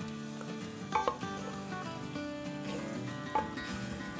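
Crushed tomato sizzling in hot fried masala in a clay pot, stirred with a wooden spoon, with a couple of light knocks of the spoon against the pot.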